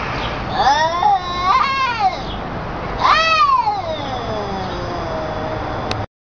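Two domestic cats yowling at each other in a face-off, the threatening caterwaul of a standoff. The long, wavering yowls rise and fall in pitch: one swells about half a second in and runs to about two seconds, another begins about three seconds in and slides down, with a lower, steadier yowl under them near the end.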